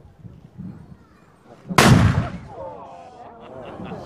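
A single loud black-powder gun shot a little under two seconds in, dying away in a short rumble, followed by excited voices.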